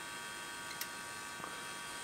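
Steady hiss with a faint hum from the speaker of a homebrew transistor signal tracer, its second amplifier stage on at maximum gain, with a faint click about a second in.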